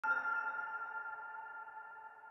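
A single electronic chime, struck once at the start and ringing out in several steady tones that slowly fade away.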